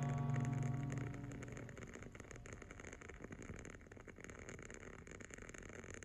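An acoustic guitar chord from outro music rings out and dies away within about the first second. It leaves faint, irregular crackling from a burning wooden-wick candle.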